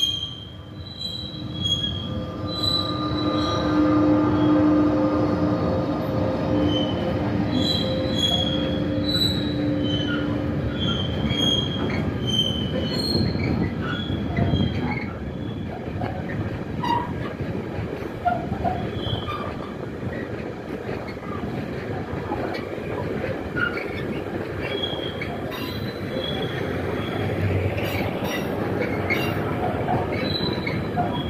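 Freight train passing close by. The locomotive draws in about 3 s in with a steady hum, then intermodal container wagons roll past with a continuous rumble and intermittent high-pitched wheel squeal.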